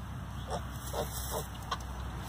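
Piglet giving soft, short grunts, about four in two seconds, while rooting in straw.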